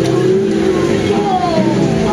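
Indistinct voices of people talking in the background, over a steady low hum.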